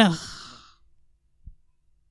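A woman's voice ends a phrase, then a breathy exhale or sigh close to a handheld microphone fades out within about a second. Near silence follows, with one faint low thump about halfway through.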